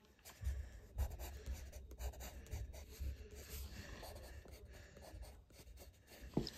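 Wooden pencil scratching on paper in many short strokes as a sketch is drawn, with a low rumble underneath from about half a second in.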